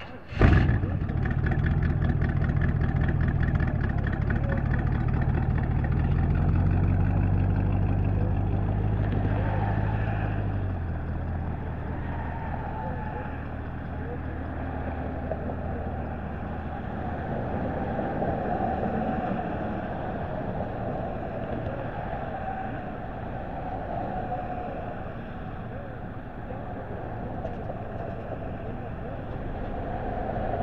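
Hot rod engine starting with a loud burst about half a second in, then running with a steady, deep note for about ten seconds before the car pulls away and its sound drops off.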